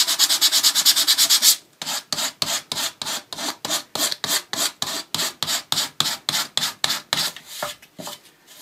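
Sandpaper on a small sanding sponge rubbed back and forth along the edge of paper glued to a painted wooden drawer front, lightly sanding away the overhanging paper to blend it in. The strokes are fast at first, then pause briefly under two seconds in, then go on slower at about four a second until near the end.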